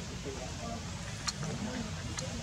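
Outdoor background: a steady low rumble with faint voices in the distance.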